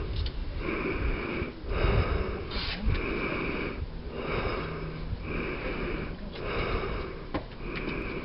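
Rhythmic breath noise close to the microphone, about one breath a second, each a short hissing puff.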